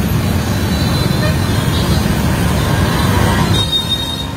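Loud, steady street-stall din: traffic noise and background voices, with a large kadai of oil bubbling as potato slices fry. The sound changes abruptly near the end.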